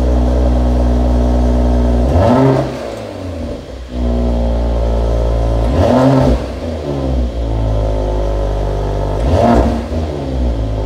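Car engine idling steadily, blipped three times, each rev rising and falling back within about a second, heard close to its twin exhaust tips.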